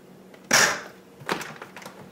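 A short, loud burst about half a second in, then a few sharp clicks and knocks from a KitchenAid food processor as its plastic lid and bowl are handled.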